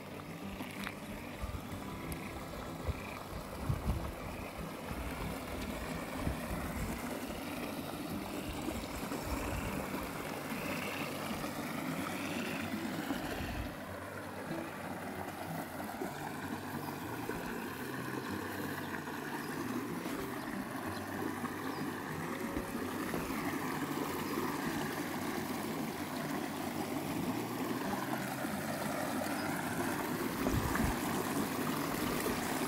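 Shallow stream running over stones and gravel, a steady rush of water. Low rumbling buffets come and go through the first half.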